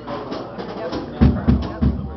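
Live jam music with drums, alongside voices: three heavy, deep drum hits land in quick succession in the second half.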